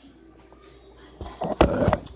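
Camera handling noise: a loud rustling scrape as the device is rubbed against clothing and a hand, with a sharp knock in the middle of it. It starts a little over a second in, after a quiet stretch.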